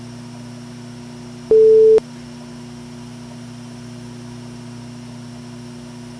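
A steady low electronic hum with a few held pitches, broken about one and a half seconds in by a loud half-second beep: a single pure tone that starts and stops with a click.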